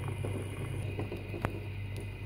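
Water boiling hard in a saucepan on a gas hob, eggs inside, a steady bubbling over a constant low hum, with a single small click about one and a half seconds in.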